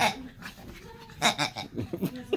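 A pug making a few short, quick vocal sounds while zooming around, mostly in the second half.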